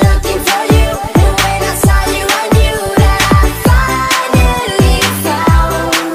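Background pop/R&B song with a steady beat: repeating deep drum hits that drop in pitch, bass notes and sustained pitched tones, with no vocal in this stretch.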